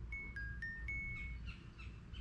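WingHome 630M trail camera playing its power-on jingle through its small built-in speaker as it boots into setup mode. It is four short electronic beeps, high, lower, a little higher, then high again, with the last note held longest.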